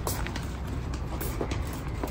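Steady low background rumble, with a few faint footsteps of sandals on paving stones.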